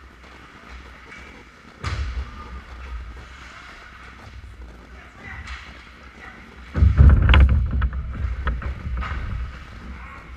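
Ice hockey play heard through a camera fixed to the goal net: a sharp knock about two seconds in, then from about seven seconds a loud, heavy rumble with a quick clatter of knocks as players, sticks and the goalie's pads bang against the net in a scramble at the crease.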